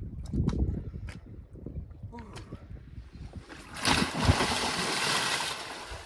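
A person falling into the sea with a loud splash about four seconds in, followed by a second or so of churning water. Before it, a low steady rumble.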